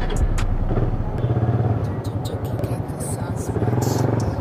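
Suzuki Raider 150 motorcycle engine running at low speed with a steady low drone while the bike rolls slowly and pulls up.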